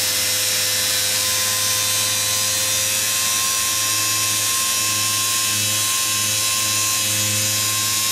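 Small air-powered polisher with a soft yellow foam pad running steadily on car paint, a constant hiss of air with a steady hum. It is buffing polish into a freshly wet-sanded paint-chip repair, the final polishing step.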